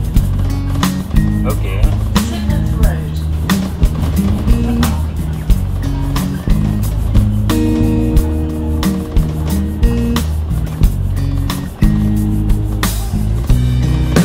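Music with a steady drum beat over a deep, stepping bassline.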